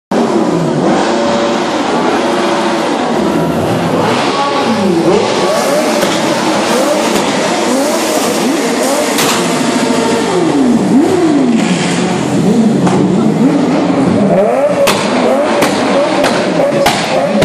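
Car engines being revved again and again as the cars roll slowly past, each rev a quick rise and fall in pitch, over the steady hubbub of a street crowd.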